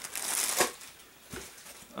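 Plastic air-pillow packing crinkling as it is handled, with a sharp tap about half a second in and a fainter one later.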